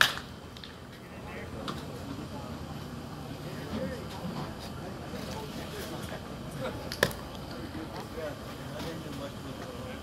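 A baseball smacking into the catcher's mitt with a sharp pop twice, once at the start and louder about seven seconds in, over a low murmur of spectator chatter.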